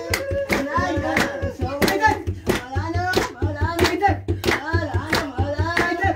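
A group of people singing together with sharp, steady handclaps, about three a second, over a low pulsing beat.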